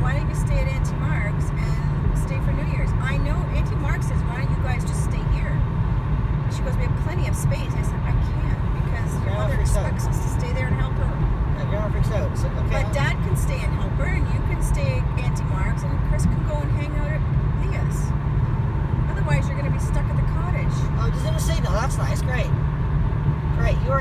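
Steady low road and engine rumble inside a car's cabin at highway speed, with faint voices talking over it.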